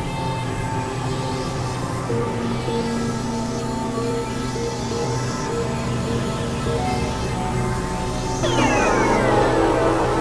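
Experimental electronic synthesizer drone music: layered sustained tones held steady. About eight and a half seconds in, a cluster of falling pitch sweeps comes in and the music gets louder.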